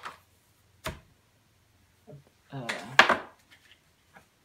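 Two sharp knocks of objects being handled on a tabletop, the second and louder one about three seconds in, during a short murmur of voice.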